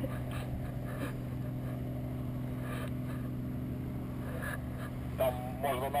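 A steady low mechanical hum at a constant pitch, with a brief voice near the end.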